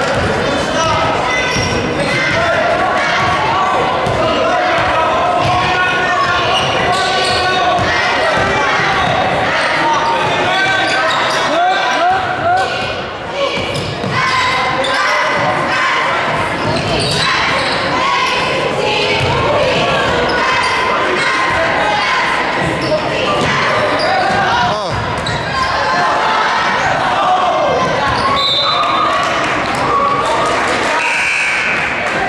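Basketball bouncing on a hardwood gym floor during play, under a steady din of crowd and bench voices echoing in a large gymnasium.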